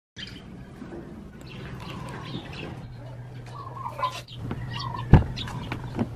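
Birds chirping over a low steady hum, with one sharp click about five seconds in.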